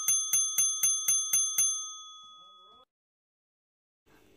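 A small bell struck rapidly, about four rings a second. The strikes stop about a second and a half in and the ringing fades out by about three seconds in.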